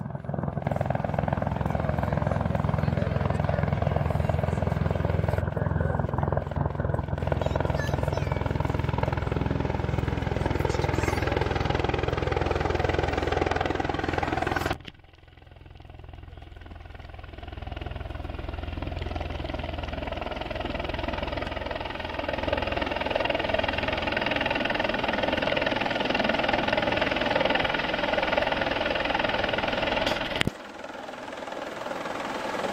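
Helicopter flying in low to land, its rotor and engine noise steady and loud with a fast low beat. About halfway through the sound drops off suddenly, then builds back up as the helicopter comes nearer.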